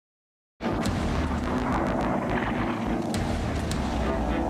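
Battle sound effects: a heavy rumble, like aircraft and explosions, that starts abruptly after a brief silence, with three sharp cracks like gunshots.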